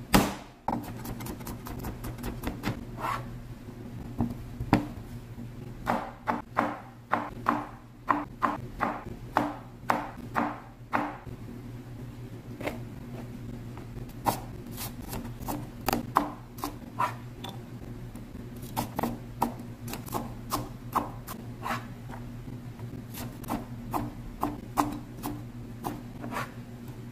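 Chinese cleaver chopping bell pepper on a plastic cutting board: sharp knocks in quick irregular runs, with one loud knock at the very start. A steady low hum runs underneath.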